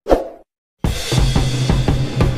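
A short pop sound effect that fades quickly, then silence; about a second in, music starts with a steady drum-kit beat and bass.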